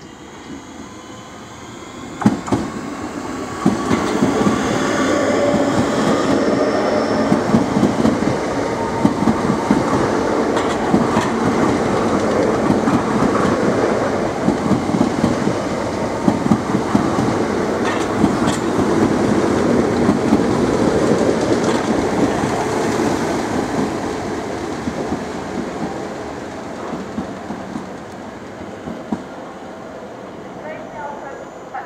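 Southeastern electric multiple-unit train running past close by on the near track, its wheels clattering rhythmically over the rail joints. The sound swells a couple of seconds in and fades away over the last few seconds.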